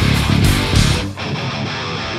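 Live heavy metal band playing loud distorted electric guitars and drums. About a second in, the drums and bass drop out and an electric guitar carries on alone.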